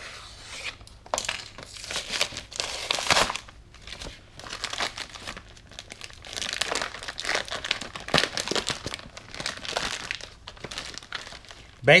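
A cardboard-backed retail package being torn open and its plastic bag crinkled as the contents are pulled out, in irregular spurts of tearing and crinkling.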